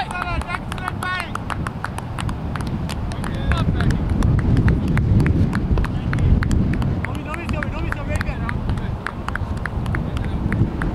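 Wind buffeting the microphone, a low rumble that swells in the middle, under short calls and voices of players on the field. A rapid, irregular patter of faint ticks runs along with it.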